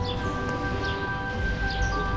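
Soft background score of held, bell-like notes over a low bass, the notes changing a few times, with a few short high chirps over it.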